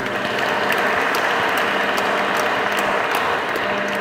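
Audience applauding steadily, many hands clapping at once, dying down slightly near the end.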